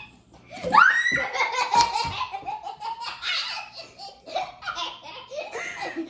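Young girls laughing hard, with a loud rising squeal about a second in, then continued giggling.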